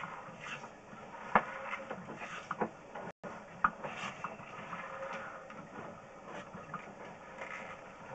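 Sewer inspection camera's push cable being fed by hand down the line: scattered light clicks and knocks with rubbing over a low, steady hiss.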